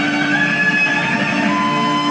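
Live band music led by a single-cutaway electric guitar, playing long sustained notes that shift slowly in pitch.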